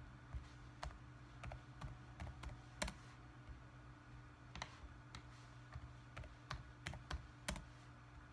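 Fingers tapping and clicking on a laptop's plastic touchpad and palm rest: faint, irregular clicks, about fifteen in all, with a steady low hum underneath.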